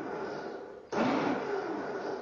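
Countertop blender pulsed on a jug of bananas: the motor starts abruptly about halfway through and winds down over the following second, after the dying tail of the pulse before it.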